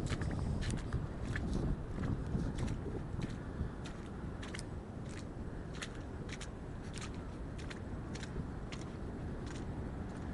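Footsteps on a rocky, pebbly foreshore: irregular sharp clicks and knocks of boots on stones, two or three a second, over a steady low rush in the background.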